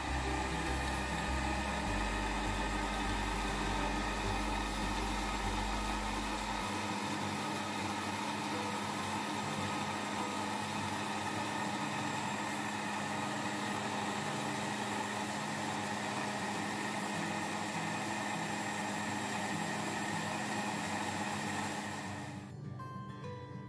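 Electric countertop blender running steadily, blending a thin liquid mix of milk, sugar and eggs.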